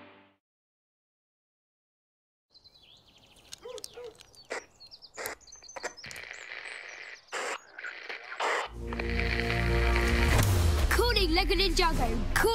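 Advert soundtrack: the previous music dies away into a couple of seconds of silence, then soft scattered clicks and knocks, and about nine seconds in music swells up, with a voice over it near the end.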